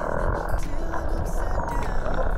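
Muffled underwater sound from a camera below the surface: a steady dense churn of bubbling and water rushing past as a swimmer moves among dolphins.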